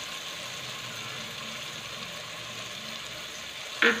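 Shallots, tomatoes and green chillies frying in oil in an aluminium pressure cooker: a steady, soft sizzle, with no stirring strokes.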